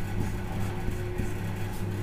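A steady low electrical hum over faint room noise.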